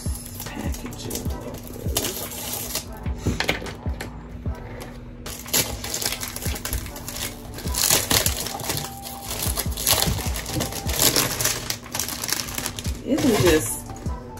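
Cellophane shrink-wrap on a perfume box being snipped with small scissors and peeled off by hand, crinkling and crackling in irregular bursts.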